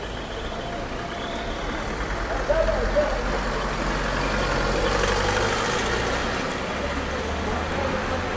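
City street traffic noise: a motor vehicle engine running with a steady low rumble, swelling in the middle, with passers-by's voices.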